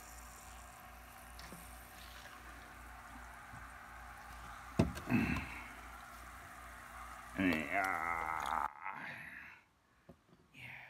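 Liquid plant nutrient poured from a bottle into a small glass measuring cup, a faint steady trickle, with a sharp knock about five seconds in.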